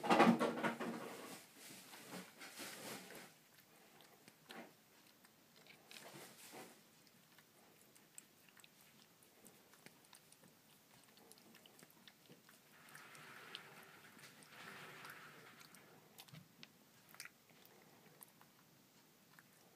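A cat crunching and chewing dry kibble from a bowl, in irregular bursts of small crunches and clicks, loudest in the first second or so.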